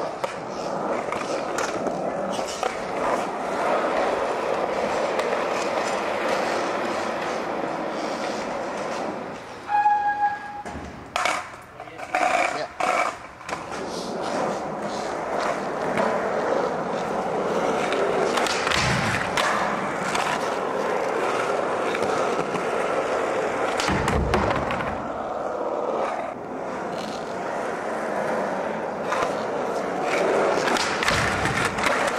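Skateboard wheels rolling steadily over a smooth concrete floor. From about ten to thirteen seconds in the rolling drops away and the board gives several sharp clacks and knocks, then the rolling picks up again, with a couple of low thumps later on.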